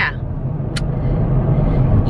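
Steady low rumble of a minivan's engine and road noise heard from inside the moving cabin, with one short click about a third of the way in.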